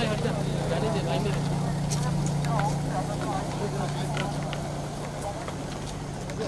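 A car's engine hums steadily as the car creeps past at close range. Overlapping voices of a crowd of photographers and a few short, sharp clicks sound over it.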